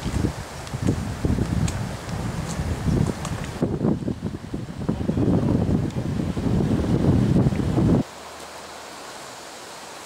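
Wind buffeting the microphone in irregular gusts. About eight seconds in it cuts off abruptly, leaving a much quieter steady outdoor hiss.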